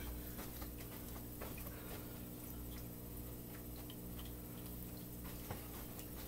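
Low steady hum with faint scattered ticks and clicks, and a small knock near the end.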